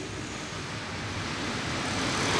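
Steady rushing background noise with no clear tone or rhythm, slowly growing louder.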